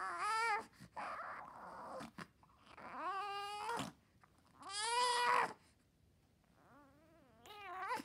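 Newborn baby fussing and crying in short wails, each under a second long, about four of them with a strained fussy sound between the first two. The cries swell into full crying near the end.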